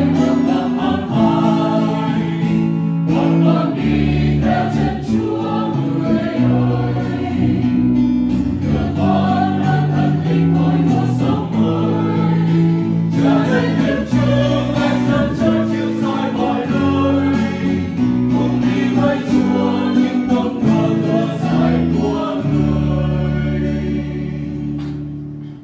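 Mixed choir of men and women singing a Vietnamese hymn, accompanied by acoustic guitar and electric bass guitar.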